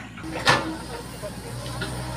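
Komatsu PC70 excavator's diesel engine running steadily as it digs, with a short, sharp noise about half a second in.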